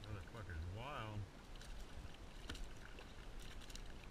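A man's wordless voice rising and falling for about a second, then scattered sharp splashes and clicks as a hooked speckled trout thrashes at the surface beside a plastic kayak.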